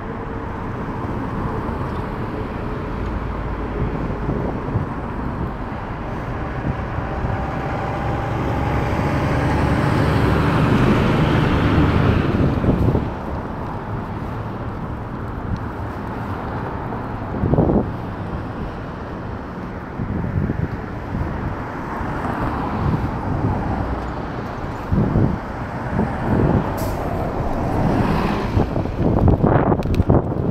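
City road traffic with a steady low rumble. A vehicle passes, building to its loudest about twelve seconds in and then falling away, and a few short knocks come near the end.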